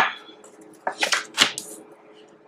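Tarot cards being handled: a card drawn from the deck and laid on a wooden table, heard as about four short, crisp snaps and taps in quick succession about a second in.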